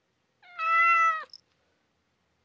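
A single short call, a little under a second long, holding a steady pitch and then dropping at the end, followed by a faint click.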